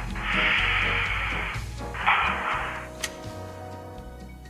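Radio station ident sounder: two rushes of hiss, the first about a second and a half long and the second about a second, over low music that is fading out. A sharp click comes about three seconds in.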